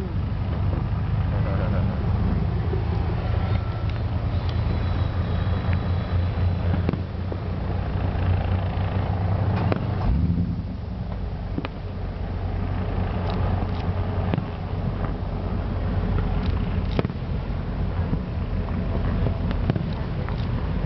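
Distant fireworks bursting over a steady low rumble, with a few sharp pops scattered through.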